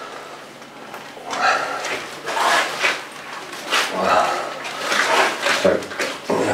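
Gloved hands scooping chunks of cured meat from a plastic tub and packing them onto a pig skin: wet squishing and rubbing in several separate handfuls.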